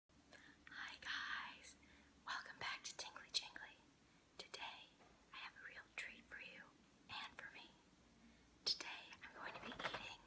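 A woman whispering in short phrases close to a clip-on microphone, with a few sharp clicks between phrases.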